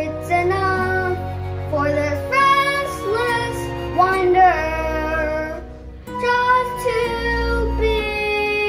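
A child singing a musical-theatre song over an instrumental backing track, holding long notes with some slides in pitch. There is a brief break in the phrase about six seconds in.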